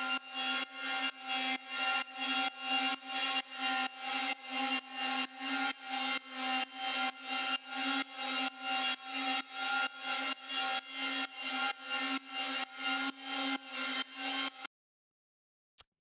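Arturia ARP 2600 V3 software synthesizer playing an effected arpeggio around an F minor chord, giving an ambient sound: evenly repeating notes, about three a second, over steady held tones. It cuts off abruptly shortly before the end.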